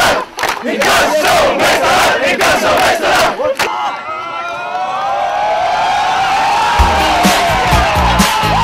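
Football stadium crowd chanting and shouting, with sharp claps or drum hits. About halfway through the crowd noise gives way to a long held note that slowly rises and falls, and a heavy dance-music beat comes in near the end.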